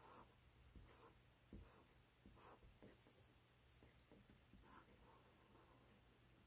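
Faint scratching of a Sharpie fine-point marker drawing on paper, in a series of short strokes about a second apart.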